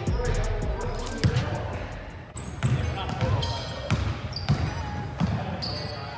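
Basketballs bouncing on a hardwood gym floor, a series of knocks echoing in the large hall, with players' voices.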